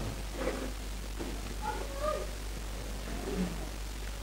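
Several short, high-pitched mewing calls, each gliding up and down in pitch, scattered through a quiet room over a low steady hum.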